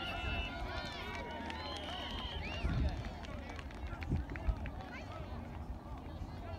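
Many distant voices of players and spectators talking and calling out across an open field, with a brief steady high tone about two seconds in and a few low bumps on the microphone.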